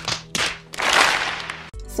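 Two sharp slaps, then about a second of crowd noise, from a film clip's soundtrack.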